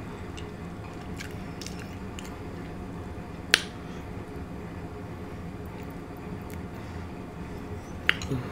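A spoon scooping butter sauce and onions out of a glass bowl, with faint wet squishing and a few small clicks. One sharp clink of the spoon against the glass comes about three and a half seconds in.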